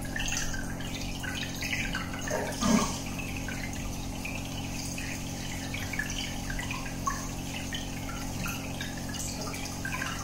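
Aquarium air bubbles trickling and popping at the water surface in a steady run of small splashes, over a steady low hum. A louder gurgle comes a little under three seconds in.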